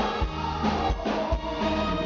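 A man singing live into a handheld microphone over a band, with a steady drum beat thumping underneath, all amplified through the stage PA.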